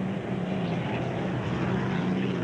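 Unlimited racing hydroplane's V12 piston aircraft engine running flat out at racing speed: a steady, unbroken drone.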